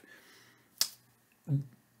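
A single sharp click a little under a second in, followed by a brief, low vocal sound from the man.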